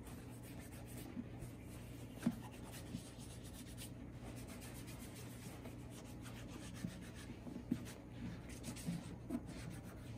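Faint rubbing of a cloth wiped over the leather of a Red Wing Iron Ranger boot, with a few light taps as the boot is handled.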